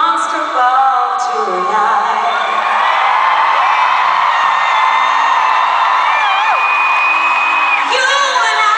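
A woman singing a slow ballad into a microphone over piano at a live concert, with whoops and voices from the crowd close to the recording. Near the end she holds one long note.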